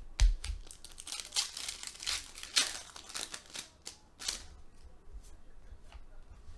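Foil-wrapped basketball trading-card packs being ripped open and the cards handled: a dense run of crinkles and rips for about four seconds, then quieter rustling.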